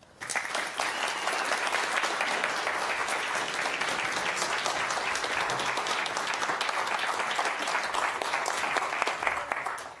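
Lecture-hall audience applauding steadily, fading out just before the end.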